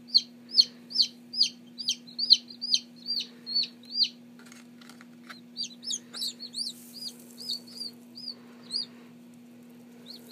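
Newly hatched Black Copper Marans chicks peeping: a rapid run of loud, high, downward-sliding peeps, about three a second, pausing briefly near the middle before a second run. A steady low hum lies underneath.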